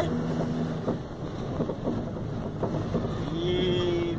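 Inside a cargo truck's cab while driving: the engine runs under a steady wash of road noise, and its low hum fades about a second in. A short held tone sounds near the end.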